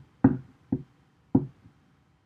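Three short, dull knocks about half a second apart, the first the loudest, like light blows on a hard surface close to the microphone.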